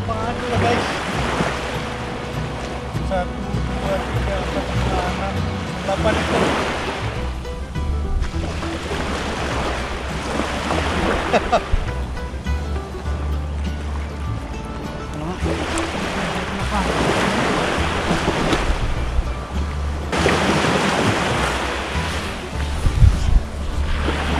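Small waves washing up the beach in slow surges every few seconds, with wind rumbling on the microphone and background music underneath.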